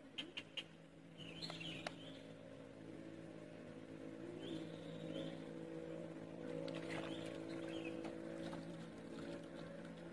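A steady motor hum holding one pitch, with a few sharp clicks in the first two seconds and short, high chirps now and then.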